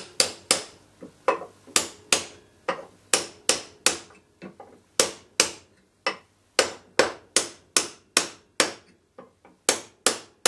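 Hammer blows on a steel drift bar, driving a home-made steel pickaroon head down onto its wooden handle: a steady run of sharp metallic strikes, about two or three a second, each with a short ring, pausing briefly around the middle, some blows lighter than others.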